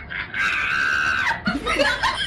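A person screams once, a high held scream of about a second that drops away at the end, followed by laughter.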